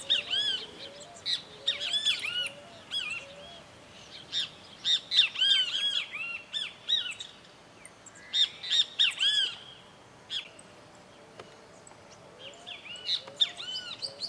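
Wild birds calling outdoors: repeated bursts of quick, arched chirps with short pauses between them, and fainter lower notes underneath.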